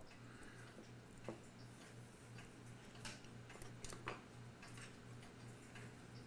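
Near silence with a steady low hum, broken by a few faint, irregularly spaced clicks of small watchmaker's tools against the clock's platform escapement parts, about a second in and again around three and four seconds.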